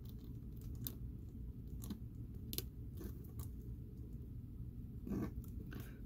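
Faint, scattered clicks and light rubbing of hands handling a plastic action figure and working its joints, over a low steady background hum.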